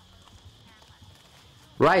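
Faint outdoor field ambience with a steady high-pitched hiss and a couple of faint chirps; a narrator's voice starts near the end.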